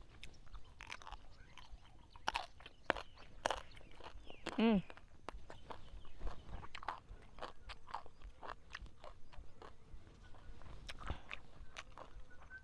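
A mouthful of raw pea eggplants being crunched and chewed, with irregular crisp crunches throughout. A short hummed vocal sound about four and a half seconds in.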